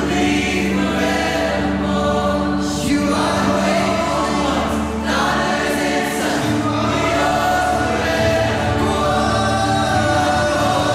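Live worship music: a worship leader and congregation singing together like a choir, over steady held low accompaniment notes, with new sung phrases beginning about three and five seconds in.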